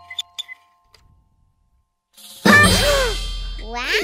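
Jack-in-the-box pop sound effect: a few faint clicks, a pause, then about halfway through a sudden loud pop with a short exclamation, followed near the end by a falling, sliding whistle-like tone as the toy springs open.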